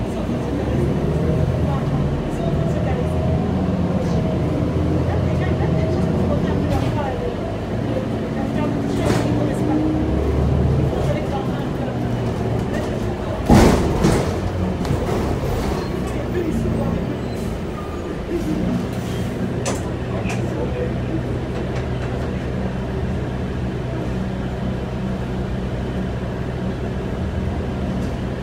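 Cabin sound of a 2012 New Flyer C40LF city bus under way, its compressed-natural-gas engine and transmission running and rising in pitch as it pulls ahead in the first ten seconds. A single loud clunk comes about halfway through, then steady running.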